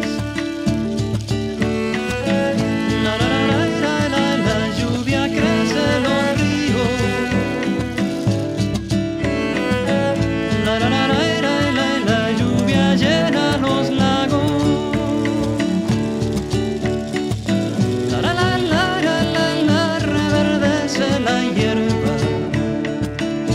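Instrumental break in a song: a wavering, vibrato melody, bowed-string-like, over a full sustained accompaniment, with no singing.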